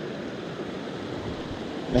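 Small mountain trout stream running high and fast after heavy rain, a steady rush of water over rocks close by.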